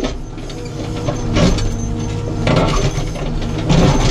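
Caterpillar 432F2 backhoe loader's four-cylinder diesel engine running steadily under hydraulic load, heard from inside the cab, as the backhoe bucket digs at soil and a large stone. Several louder scraping bursts come about a second and a half in, around two and a half seconds, and near the end.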